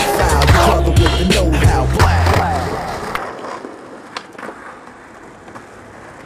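Music with a heavy bass beat that cuts out about three seconds in. Under it, and alone after it, skateboard wheels roll on pavement with a few sharp clicks from the board.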